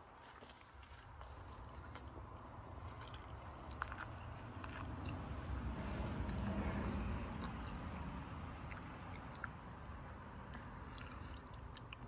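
Faint close-up chewing of a mouthful of soft flour-tortilla beef taco, with small wet mouth clicks scattered through it, a little louder in the middle.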